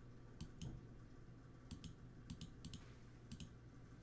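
Faint clicks of a computer mouse, about ten of them, mostly in quick pairs, over a low steady hum.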